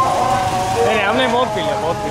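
Voices of people talking in a busy street, over a steady hum of motor traffic.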